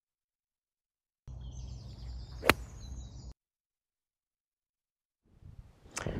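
A single crisp strike of a golf iron on the ball and turf on a short half swing, heard once about two and a half seconds in over faint outdoor background noise; the rest is silent.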